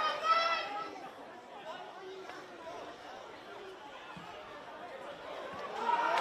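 Voices at a football ground: one loud shouted call at the start, then low, indistinct chatter from players and spectators, with louder shouting starting near the end.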